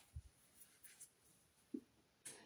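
Near silence: room tone, with a faint low thump just after the start and a few faint soft clicks.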